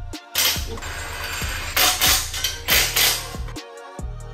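Background music, with several bursts of ratchet wrench clicking on the exhaust header bolts, the loudest about two and three seconds in.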